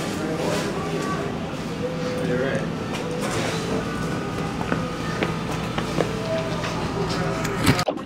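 Indistinct voices, too muffled for words, over a steady low hum, with a few faint clicks and a sudden loud noise near the end.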